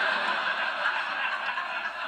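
Sitcom studio audience laughing steadily, heard through a tablet's speaker.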